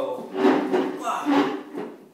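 Loud wordless voices, shouts and laughter, in two or three bursts over the first second and a half.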